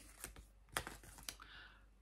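A paper yarn label being handled and turned over in the hands: a few faint, scattered clicks and soft paper rustles.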